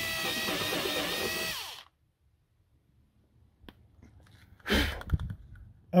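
Cordless drill running as it drills a hole, its motor whine wavering slightly in pitch for about two seconds before it stops. A brief knock follows near the end.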